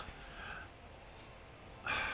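A pause in speech filled with a man's breathing: a soft breath about half a second in, then a quick, louder intake of breath near the end, over faint room tone.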